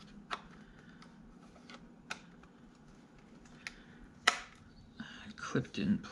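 A few scattered sharp clicks and taps of a hard plastic drive adapter tray and SSD being handled, the loudest about four seconds in. A man's voice starts up near the end.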